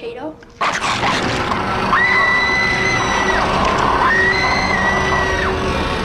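A sudden loud, harsh noise breaks in about half a second in and carries on. Over it a girl screams twice, each high, held scream lasting about a second and a half.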